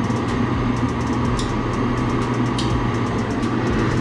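Steady electrical hum and fan whir from running screen-printing dryer equipment, with a few faint ticks.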